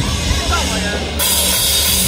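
Metalcore band starting a song live through a festival PA: about a second in, the drums and cymbals come in with the full band, loud.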